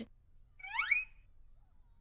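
A short, high squeak that glides quickly upward in pitch, a little over half a second in, lasting under half a second: a cartoon sound effect.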